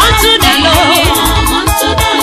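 Nigerian gospel praise music: a steady, heavy bass beat under quick, regular percussion and wavering melodic lines.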